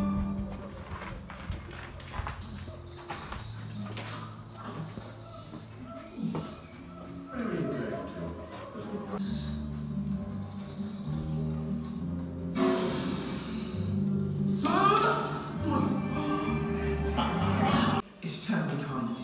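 Soundtrack of an animated film playing through an attraction's speakers: background music with character voices, and a brief rushing sound effect about two-thirds of the way through.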